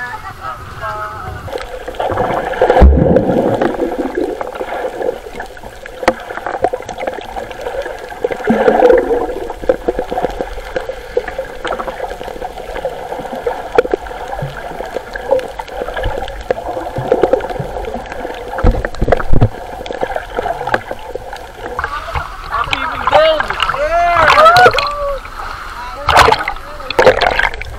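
Seawater splashing, gurgling and bubbling against an action camera's waterproof case as it goes under the surface, over a steady hum. A loud splash comes about three seconds in, and a flurry of bubbling sweeps comes near the end.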